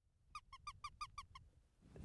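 A fox call squeaked in a quick run of about eight short, high squeaks over about a second, a lure meant to get a fox's interest and bring it in.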